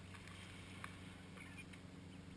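Very faint: a steady low hum with a few soft clicks, as mallard ducklings peck at bread crumbs on the sand.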